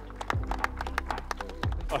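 A few people clapping, sparse uneven claps, over background music.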